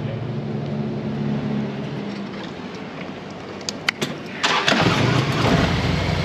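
A Harley-Davidson V-twin motorcycle engine starting about four and a half seconds in and then running loudly, just after a few sharp clicks. Before that there is a low steady engine hum.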